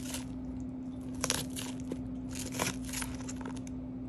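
A fork clinking and scraping on a plate as it spears crisp lettuce, in a few short crackly bursts about a second in and again past the middle.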